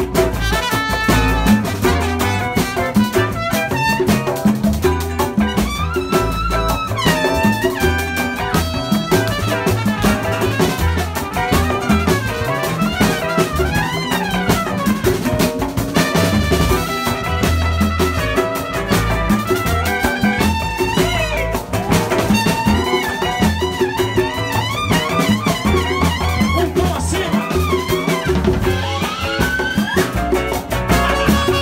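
Live Brazilian bossa nova–style band playing: a trumpet leads the melody over plucked upright double bass and a drum kit with cymbals.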